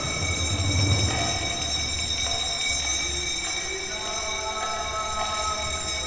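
Pause in the recitation: a low rumble of hall ambience with several steady high-pitched tones running underneath, like an electronic whine, and no chanting.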